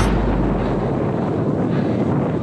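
Steady rush of wind on an action camera's microphone while skiing downhill.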